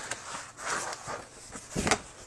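Heavy, gessoed watercolour paper rustling and sliding on a table as a large sheet is handled and folded, with a louder crackle near the end.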